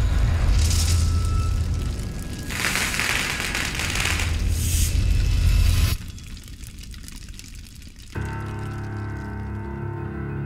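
Cinematic stage-intro music: a heavy low rumble with two swelling hisses over it for about six seconds, cutting off suddenly. After a short quieter stretch, soft music with sustained notes begins about eight seconds in.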